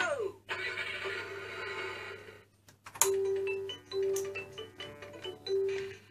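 Electronic sound effects and a tune from the speaker of a VTech Tiny Tot Driver toy dashboard. It opens with a quick sliding pitch glide and a short buzzy effect. About halfway in, a plinky electronic melody begins.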